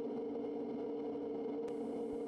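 Kodiak 100's turboprop engine and propeller droning steadily inside the cockpit, a constant low hum with two steady tones and no change in pitch.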